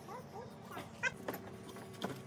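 A few short, rising animal calls, with a sharp click just past the middle, then a faint steady hum.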